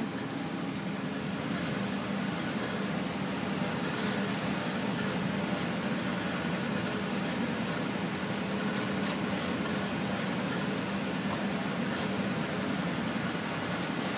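Steady hum and rush of air from a biosafety cabinet's blower, with the aspiration vacuum switched on, and a few faint clicks of tubing and pipette handling.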